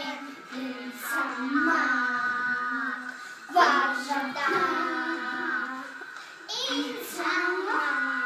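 Young children singing a song together.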